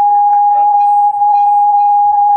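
Microphone feedback through a room's sound system: one loud, steady ringing tone held without a break.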